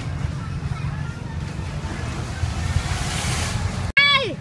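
Open-air market background: a steady low rumble with faint voices talking in the distance. A rush of hiss swells about three seconds in, then the sound cuts off abruptly just before the end.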